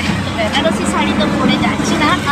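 Auto-rickshaw running, heard from inside its passenger cab as a steady low hum, under a woman's voice.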